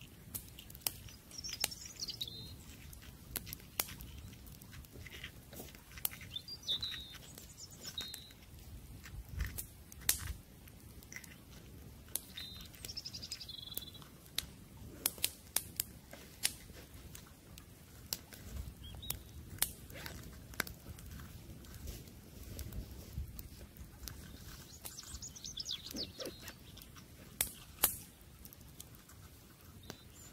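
Wood campfire crackling, with sharp irregular pops scattered throughout. Small birds chirp in short, falling phrases every few seconds.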